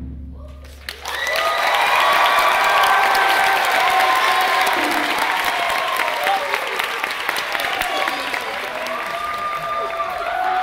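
The low ring of taiko drums dies away over the first second, then an audience breaks into loud applause with cheers and whoops, slowly fading.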